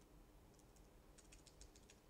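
Faint typing on a laptop keyboard: a couple of key clicks about half a second in, then a quicker run of clicks in the second half.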